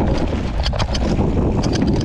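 Wind rushing over an action camera's microphone while a mountain bike rolls down a dusty dirt trail, with tyre noise on loose dirt and scattered rattling clicks from the bike over the bumps.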